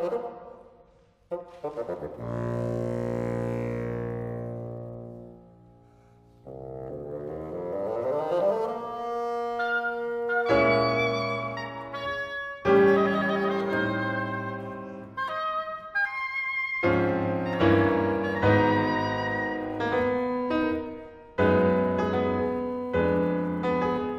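Chamber trio of oboe, bassoon and piano playing a fast classical movement. A held chord fades almost to nothing about five seconds in, then a rising phrase leads back into busier playing, with piano chords under the two reed instruments.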